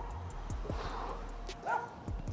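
A dog barking in two short yips, one at the start and one near the end, over faint background music.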